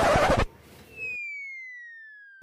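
An edited-in comedy sound effect: a short loud burst of noise that cuts off in the first half second, then a single whistle-like tone sliding slowly downward in pitch and fading away.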